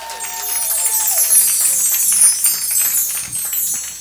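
Percussion flourish on high metallic chimes, a shimmering cascade of bright ringing tones that swells in about a second in. At the start a held musical note drops in pitch and stops about a second in.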